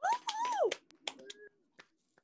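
A single voice calling out "woo" in excitement, its pitch rising and then dropping sharply, with a few short sharp clicks around and after it.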